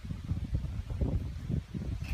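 Wind noise on the microphone: a low, uneven rumble.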